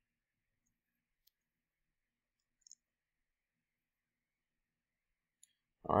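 Near silence broken by a few faint, short computer mouse clicks, about one, two and a half and five and a half seconds in.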